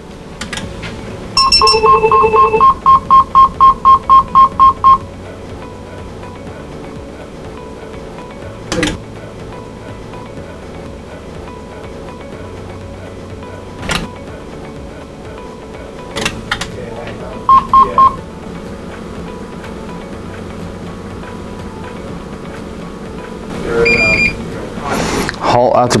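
Electronic beeps from the defibrillator and safety-analyzer test setup during an automated leakage test: a two-tone beep, then a quick string of about ten beeps at one pitch, with a short cluster of beeps later. A few sharp clicks, likely the analyzer's relays switching the test configuration, sit over a steady low hum.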